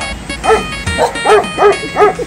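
A dog barking in quick repeated yaps, about three a second, starting about half a second in, over background music.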